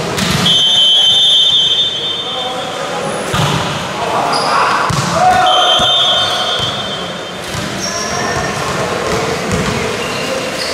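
Indoor volleyball rally heard in a large, echoing hall: ball hits and spectators shouting and cheering, with two long, shrill whistle blasts, one just after the start and one about five seconds in.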